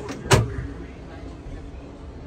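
A single sharp knock about a third of a second in, over a steady background hum.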